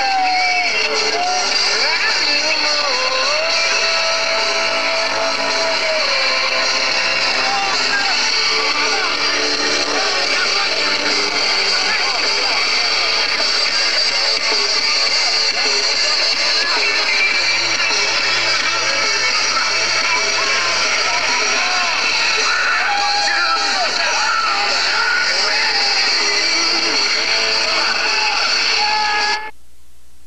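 Loud dance music with a crowd of voices talking and shouting over it, heard through a camcorder microphone. It cuts off suddenly near the end, leaving only faint tape hiss.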